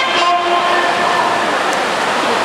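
Saxophone playing long held notes: a lower note for about the first second, then a higher one held for most of a second, over steady hall noise.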